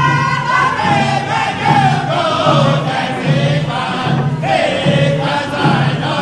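Group of men singing a Native American round dance song in unison, the voices sliding between long held notes, with a new phrase starting past the middle. Hand drums beat softly and steadily underneath, a little more than once a second.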